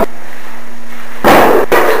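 A person being thrown down onto a carpeted floor while wrestling: two loud, distorted thuds in the second half, a short one then a longer one, over a steady low hum.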